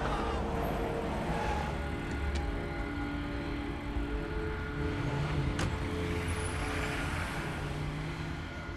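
Film soundtrack mix: music with long held notes over a steady low engine rumble, with two faint clicks, about two and a half and five and a half seconds in.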